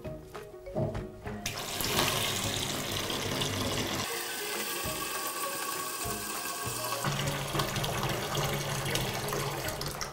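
Kitchen tap running steadily into a plugged stainless steel sink, filling it with water; the flow starts about a second and a half in.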